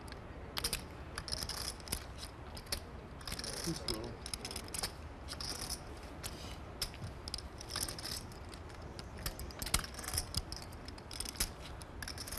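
Scattered light clicks and small rattling runs of poker chips being handled and stacked at the table, with a faint murmur of voices.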